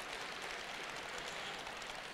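Faint, steady applause from an audience, heard as an even patter of clapping with no single claps standing out.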